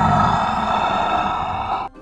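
A sustained dramatic sound effect: a low rumble under a held ringing tone, cut off suddenly near the end.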